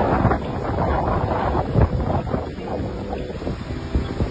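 Gusty storm wind buffeting the microphone in loud, irregular rumbling gusts, easing a little in the second half.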